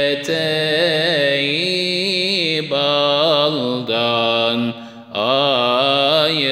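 A solo voice singing a Turkish ilahi in makam hüzzam without instruments: long, ornamented, wavering melismatic notes, with a short break for breath about five seconds in.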